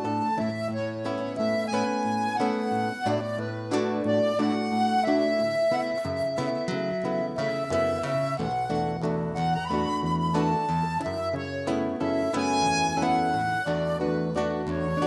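Instrumental passage of a Brazilian song played by accordion, flute and acoustic guitars, one of them a seven-string guitar, with held melody notes over a moving bass line and no singing.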